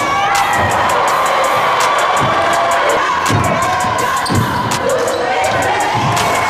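A basketball bouncing on a hardwood gym floor, several dull thumps a second or so apart, over the steady noise of a crowd in the gym.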